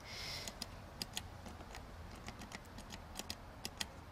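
Faint, irregular light clicks and ticks, a dozen or so spread over a few seconds, after a brief soft hiss at the start.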